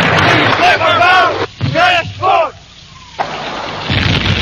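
Several men's voices calling out loudly over one another in quick rising-and-falling cries, which cut off about two and a half seconds in. A brief hush follows, then a low background rumble.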